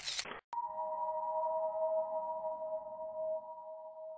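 Logo-intro sound effect: the tail of a loud swoosh dies away in the first half second, then a steady ringing tone of several pitches together starts and is held, slowly fading.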